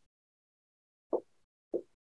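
Two short, soft taps of a pen or marker on the writing surface while working is written out, one a little over a second in and one near the end.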